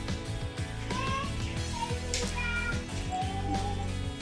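Background music with a steady beat. From about a second in, high-pitched wavering calls sound over it.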